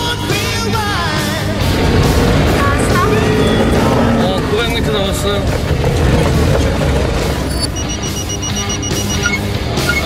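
Edited background music over the low rumble of a van driving, with a few spoken words. A short run of rapid electronic beeps comes near the end.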